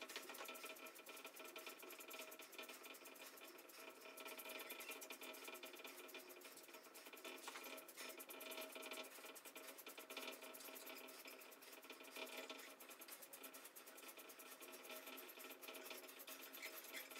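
Faint, rapid crisp ticking of a Welsh terrier's wiry coat being hand-plucked, small tufts of hair pulled out one after another, over a few faint steady tones.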